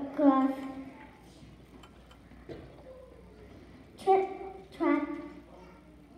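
Speech only: a high voice speaking short lines, with a quiet gap of about three seconds between them.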